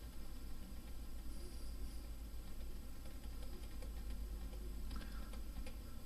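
Faint, scattered clicks of a computer mouse over a steady low hum.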